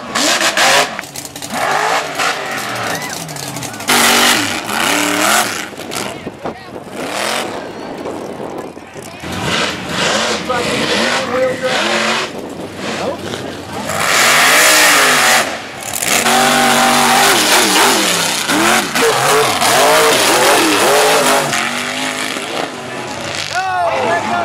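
Lifted off-road mud trucks with big tyres revving hard over and over, the engine pitch repeatedly climbing and falling, with loud rushing surges as they power through loose dirt.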